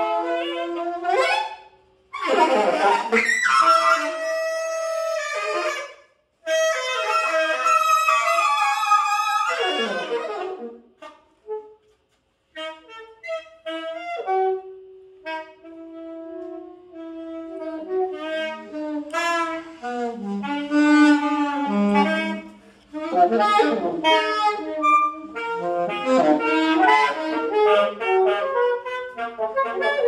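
Two alto saxophones played live as a duo, in melodic phrases broken by short pauses. About halfway through, one holds a long low note, and near the end the two lines overlap more densely.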